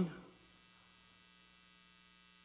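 Faint, steady electrical hum with a buzzy row of overtones, left after the last word of a man's voice fades in the first moment.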